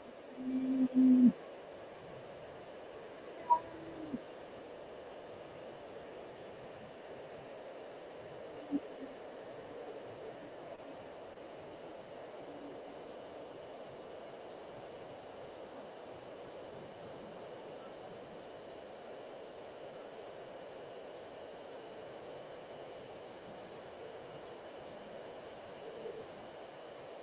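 Steady faint room hum. About a second in, a short, loud, low pitched tone sounds, like a hoot or a hummed note. A sharp click follows a couple of seconds later.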